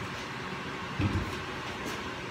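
A small portable air compressor being pushed into the bottom of a plywood cart: a low scrape and one bump about a second in.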